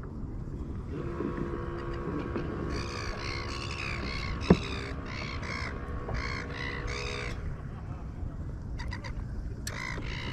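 A bird calling in a quick run of short harsh caws, about two a second, from about three seconds in to past seven seconds, then starting again near the end. Low wind and water noise and a faint steady hum run underneath.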